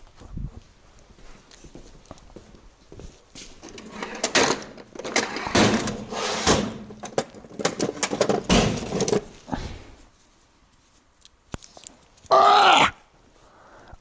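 Hand tools clattering in a metal tool-chest drawer as a hand rummages through pliers, in irregular bursts for several seconds. Near the end, a man's loud 'Oh! Oh!' exclamation.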